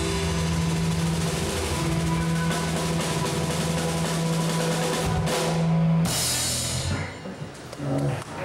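Live rock band ending a song: drums roll under a held bass and guitar chord, then a final cymbal crash about six seconds in rings out and the sound dies away.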